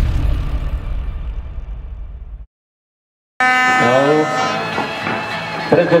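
Electronic intro music with a heavy beat fading out over about two seconds, then a short cut to silence, then live sound from an outdoor street-football match: people's voices over a long steady pitched tone.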